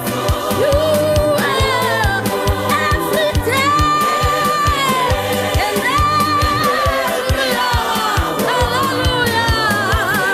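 A gospel song sung by a group of voices over a steady beat, played back from a recording.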